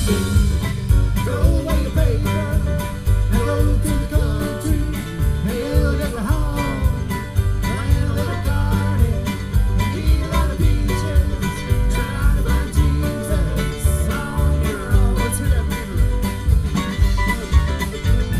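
A live acoustic string band plays a country-bluegrass song: upright bass, strummed acoustic guitar and mandolin. A quick, even picked rhythm runs over a steady bass line.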